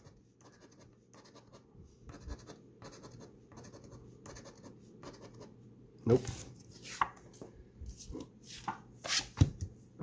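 A coin scraping the coating off a scratch-off lottery ticket: a run of faint, short scratches. It is followed by a few louder taps and rustles as the paper ticket is handled.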